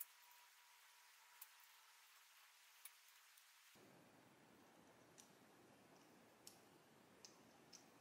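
Near silence broken by about seven faint, irregular clicks: plastic spacers and screws being fitted and handled on a CPU cooler's metal back plate.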